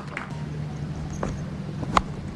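Faint ground ambience over a steady low hum, ending in one sharp crack of a cricket bat striking the ball.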